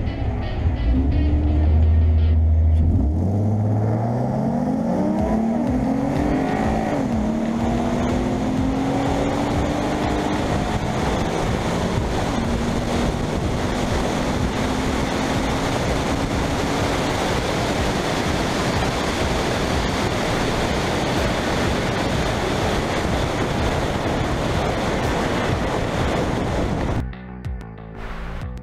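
A 3.7 L V6 Ford Mustang drag-launching down a quarter-mile strip: the engine holds a steady low note at the line, then climbs in pitch several times as it shifts up through the gears. After that, a loud steady rush of wind and road noise over a car-mounted camera continues at speed until the sound cuts away near the end.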